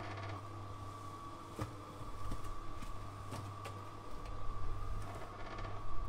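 Cement mixer running with a batch of sand-and-cement mortar turning in its drum: a steady low hum with a thin steady whine above it, and a few scattered clicks.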